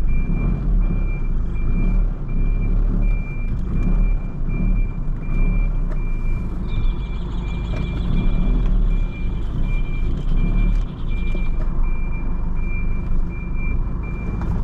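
A van's reverse alarm beeping in a steady, evenly spaced series over the low running of its engine as it backs up slowly. A second, higher beeping joins in for a few seconds around the middle.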